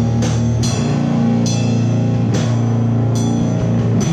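A live rock band of electric guitar, bass guitar and drum kit playing together, with sustained low chords under several cymbal crashes.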